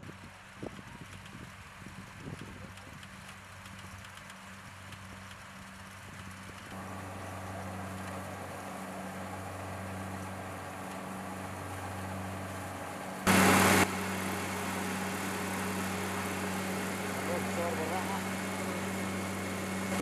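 Rice combine harvester engine running steadily as it cuts and threshes rice. It is faint at first and grows louder about a third of the way in. About two-thirds through there is a brief, loud burst of noise.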